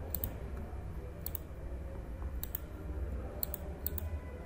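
Computer mouse button clicking in quick pairs, about four pairs spread over the few seconds, over a low steady hum.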